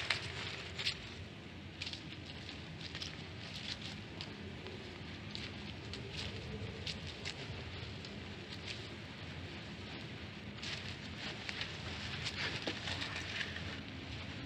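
Faint footsteps rustling through dry fallen leaves and grass, heard as scattered irregular crackles over a steady hiss and a low hum.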